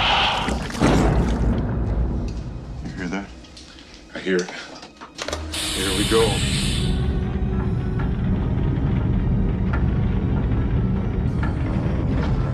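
Tense film soundtrack: music with short vocal sounds, a burst of hiss about five and a half seconds in, then a steady low rumble.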